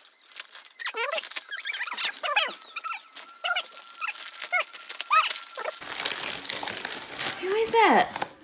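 Wrapping paper crinkling and tearing as a gift is unwrapped by hand, mixed with short vocal sounds throughout and a louder voice just before the end.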